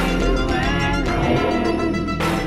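A band's recorded song playing, with sustained pitched notes over a steady low bass.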